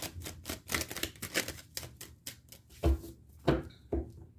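A tarot deck being shuffled by hand: a quick run of card flicks and clicks for about two seconds, then a few louder thumps near the end.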